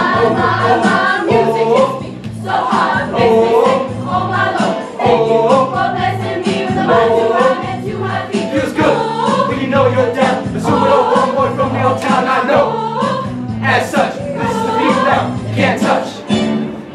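Choir singing an up-tempo song with accompaniment, a steady bass line pulsing under the voices.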